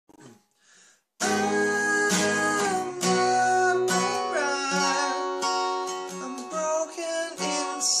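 Acoustic guitar strummed in a steady rhythm, coming in about a second in after a near-silent start. A man's singing voice joins near the end.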